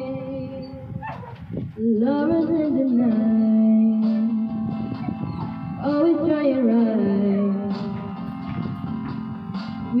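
A young woman singing a slow ballad into a handheld microphone, holding long notes, with a short pause for breath about a second in.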